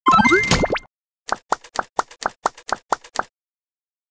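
Cartoon-style pop sound effects on an animated title graphic: a quick cluster of rising bloops at the start, then a run of nine short plops at about four a second.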